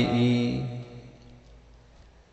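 A man's Buddhist chant ending on a long held note that fades away within about the first second, followed by a quiet pause.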